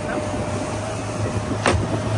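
Motorboat engine running steadily under way, with a low hum and a thin steady whine, over wind on the microphone and water noise. A single sharp knock comes about one and a half seconds in.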